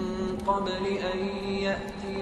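Background vocal chanting: a voice holding long melodic notes that step slowly in pitch over a steady low drone.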